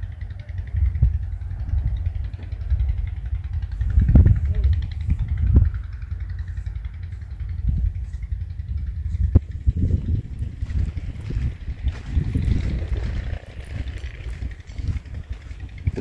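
Wind buffeting the microphone: a low, uneven rumble that swells and fades, with a few faint ticks.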